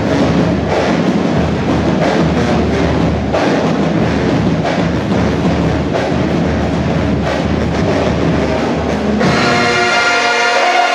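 Marching band music: a percussion-driven passage with a steady, driving drum rhythm, then, about nine seconds in, a loud sustained chord of held notes.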